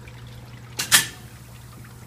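Automated immersion parts washer running with a steady low hum, and a single sharp metallic clank about a second in from the stainless wire-mesh parts basket on the indexing roller conveyor.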